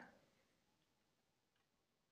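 Near silence: room tone with a few very faint ticks.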